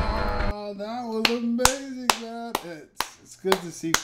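A low voice holds and slides between a few notes, with sharp snap-like clicks about twice a second, opened by a short burst of noise.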